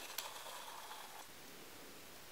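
Quiet room tone, with a single faint click just after the start.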